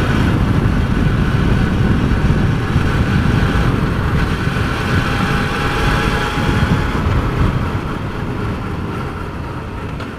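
Yamaha FZR600 inline-four motorcycle engine running steadily while riding at road speed, with heavy wind rumble on the helmet-mounted microphone. The sound eases off over the last couple of seconds.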